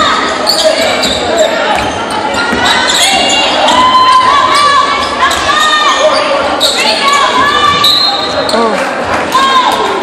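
Echoing gym sound of a basketball game in play: a basketball bouncing on the hardwood court, with shouting voices calling out over a steady crowd background.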